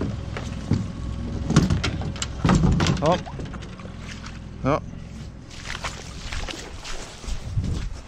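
Scattered knocks and thumps of people moving about in a small plastic boat at a wooden dock, with a heavier thump about two and a half seconds in and a couple of short spoken words.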